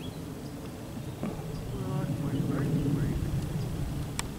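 Low outdoor rumble that swells a little towards the middle, with a faint person's voice heard briefly from about a second in.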